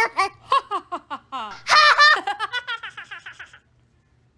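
Put-on, deliberately faked laughter: a run of short laughing bursts that grows thinner and stops about three and a half seconds in.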